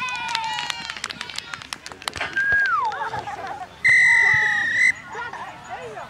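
A referee's whistle blown once, a steady high note about a second long midway, signalling a stop in play. It is the loudest sound here; before it come scattered shouts from the sideline.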